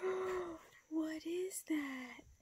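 A young child speaking softly in three short phrases.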